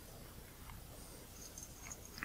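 Quiet room tone with a few faint, small ticks as fingers handle and shift a camera lens's metal diaphragm assembly to realign it.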